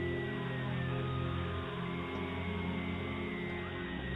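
Dark, droning horror background music: low sustained tones held steady, with a few faint thin tones gliding slowly above them.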